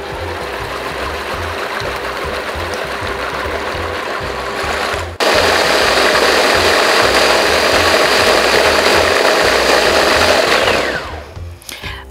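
Electric blender motor running steadily, pureeing chickpeas with water into hummus. It turns abruptly louder about five seconds in, then winds down with a falling whine near the end.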